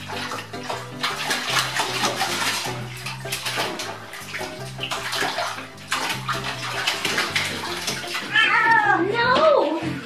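Bathwater splashing and sloshing in a tub as a cat wades and scrabbles against the side, with background music running underneath. Near the end a cat meows several times in drawn-out calls.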